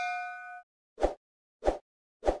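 Sound effects of an animated subscribe graphic: a bell-like chime with several ringing tones, cut off about half a second in, then two short, dull knocks, one about a second in and one near the end.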